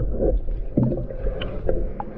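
Underwater recording of a scuba diver's exhaust bubbles rumbling and gurgling, with a few short knocks scattered through.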